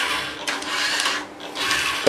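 Small DC gear motors of a remote-controlled model robot whirring as it drives its wheels across a table, dropping off briefly a little over a second in and then starting again.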